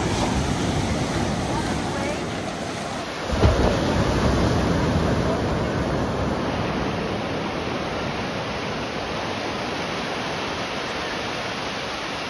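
Ocean surf breaking and washing up the beach, with wind buffeting the microphone. A wave crashes loudly about three and a half seconds in, and its wash slowly fades away.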